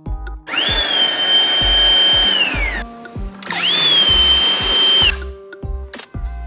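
Stihl MSA 300 C battery chainsaw run up to speed twice, its electric motor and chain giving a loud high whine that climbs quickly and then holds steady, about two seconds the first time and a second and a half the second, winding down in pitch at the end of each run. It is a test run after a new brake band and sprocket were fitted. Background music plays underneath.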